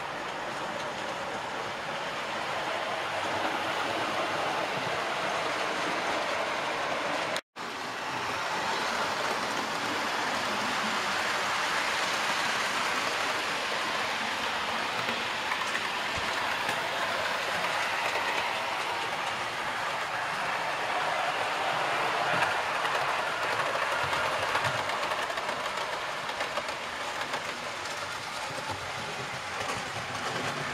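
Model Class 411 4-CEP electric multiple unit running on the layout's track with a steady running noise. The noise cuts out briefly and suddenly about seven and a half seconds in.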